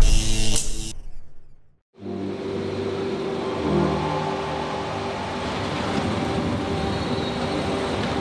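The tail of a loud logo sting dies away in the first second or two, then after a brief silence a bus's engine runs steadily, a low, even hum with a hiss above it.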